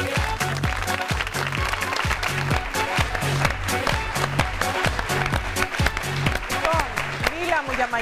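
TV show theme music with a steady dance beat, about two beats a second, over studio audience applause; a voice comes in near the end.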